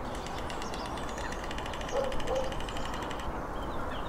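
White storks clattering their bills: a fast, even rattle of about ten clacks a second that stops about three seconds in, over a steady low background rumble.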